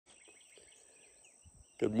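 Faint outdoor garden ambience: a steady high insect drone with a few soft bird chirps. A voice starts speaking near the end.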